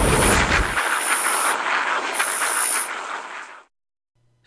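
Intro sound effect of rushing, static-like noise with a deep rumble underneath. The rumble stops just under a second in, and the hiss fades out shortly before the end.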